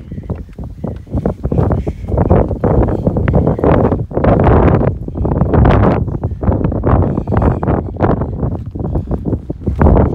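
Strong gusting wind buffeting the microphone, a loud low rumble that rises and falls, heaviest in the middle of the stretch.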